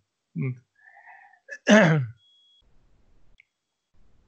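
A person sneezes once: a short voiced catch, a breath drawn in, then a loud burst falling in pitch about a second and a half in.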